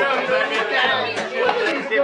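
Acoustic guitar, fiddle and upright bass playing together, with men's voices over the music.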